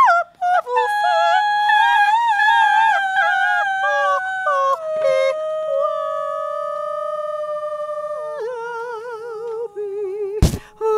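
A woman's voice swoops up into long, high held notes with a wavering vibrato, then steps down in pitch twice, each note lower than the last.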